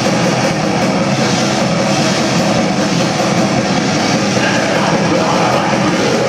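Death metal band playing live: distorted electric guitars and a drum kit at full volume, dense and unbroken.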